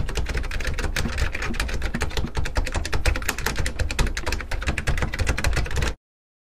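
Fast, continuous clatter of keyboard typing, many keystrokes a second, cutting off suddenly near the end.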